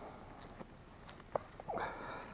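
Faint handling noise of gloved hands working tangled fishing line, with one sharp click a little past halfway and a brief rising scrape near the end.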